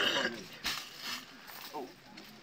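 Scattered voices of people talking in short fragments, with a single brief knock a little over half a second in.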